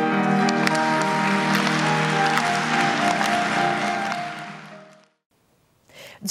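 The closing held notes of an operatic duet for tenor and soprano with grand piano, with audience applause breaking out over them about half a second in. Music and applause fade out together about five seconds in.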